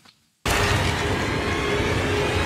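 Steady, dense roar of battle noise from a TV episode's soundtrack, starting abruptly about half a second in.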